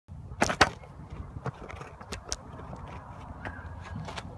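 A few sharp clicks and knocks, two close together about half a second in being the loudest, then fainter ones, over a steady low rumble.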